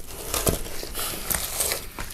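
Hands pulling the swim bladder and guts out of the slit-open belly of a large grass carp: irregular wet handling and tearing noises, with a sharp click about half a second in.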